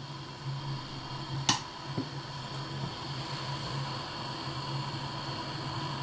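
Homemade aluminum bottle alcohol stove burning steadily under a pot of water nearing the boil: an uneven low rumble with a faint hiss. One sharp click comes about a second and a half in.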